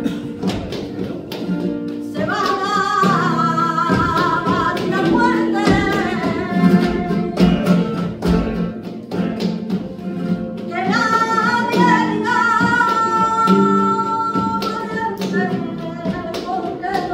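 Live flamenco bulerías: a Spanish guitar playing with palmas (hand-clapping) on the beat, and a voice singing two phrases, the first beginning about two seconds in and the second about eleven seconds in.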